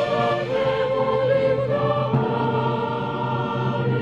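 Mixed choir of women's and men's voices singing Georgian part-song, several voices holding long notes over a steady low drone.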